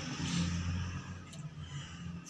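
A pause in a man's unaccompanied singing: the end of the last sung note fades out at the start, leaving only a faint low rumble.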